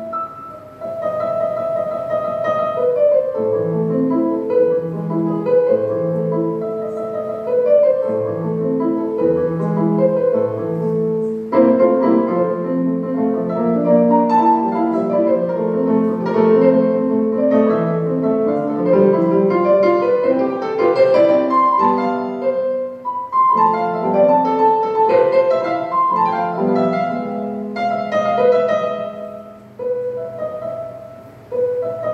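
Yamaha electronic keyboard on a piano voice, playing a melody with chords. The playing grows fuller and louder about a third of the way in, breaks off briefly a little after two-thirds, and softens near the end.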